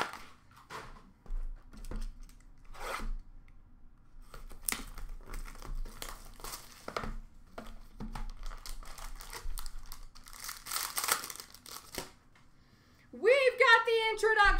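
Plastic card-pack wrapping being handled, crinkling and torn open by hand, with scattered clicks of packaging and cards. The crinkling is densest about ten to twelve seconds in. A man's voice starts just before the end.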